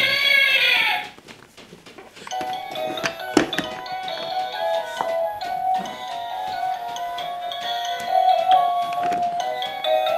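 Simple electronic chiming tune from a baby's plastic musical elephant toy, plinking note by note. It opens with a brief loud high-pitched sound that rises and falls, and a single knock sounds about three seconds in.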